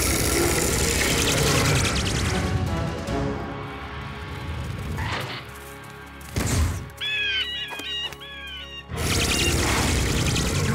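Cartoon action soundtrack: dramatic music with creature sound effects. A loud dense burst opens it as the giant rabbit snarls, two sudden whooshing hits come about five and six and a half seconds in, and a quick run of high, bending cries follows just after.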